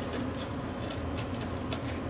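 Scissors cutting into a sheet of cardboard, a few short, irregular snips.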